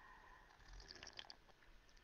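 Faint sips and swallows of coffee from a mug, a few soft wet clicks about halfway through, otherwise near silence.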